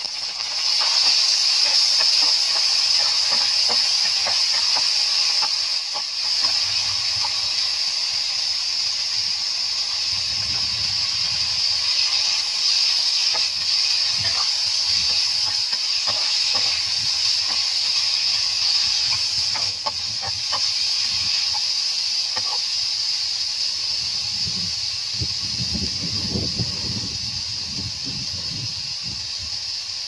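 Hot oil in a frying pan sizzling loudly, rising sharply about a second in as water is poured onto frying meatballs, then a steady sizzle that slowly eases while meatballs and sliced vegetables are stir-fried. A spatula scrapes and clicks against the pan now and then.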